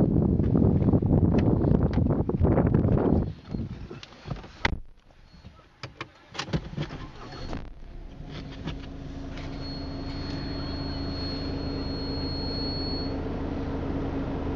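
A loud low rumble for about three seconds, then a few sharp clicks in a quieter stretch. From about eight seconds a steady, even engine hum sets in, with a faint high whine above it.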